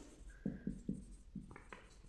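A marker pen writing a word on a white board: about five short, faint strokes.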